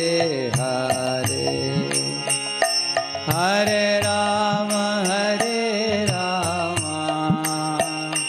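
A man singing a devotional chant while striking small brass hand cymbals (kartals) in a steady rhythm.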